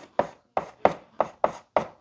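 Chalk writing on a blackboard: a run of short, sharp chalk strokes and taps as characters are written, about three a second.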